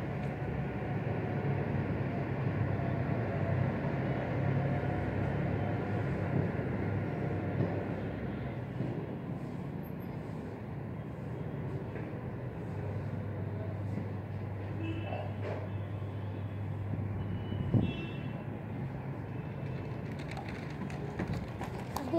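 Steady outdoor background noise: a low hum under a broad rush of air and distant sound. A few faint short high chirps come about two-thirds of the way through, and one soft knock follows shortly after.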